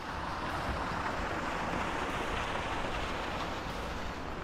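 Steady rushing of flowing river water.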